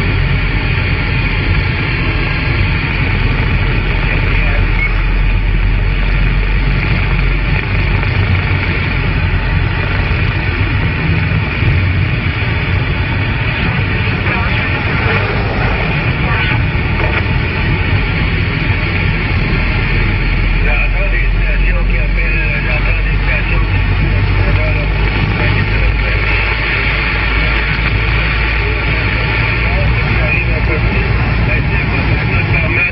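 CB radio receiving a weak long-distance station on 27 MHz: steady static and hiss with a faint, barely intelligible voice buried in it, typical of a transatlantic skip contact at the edge of propagation.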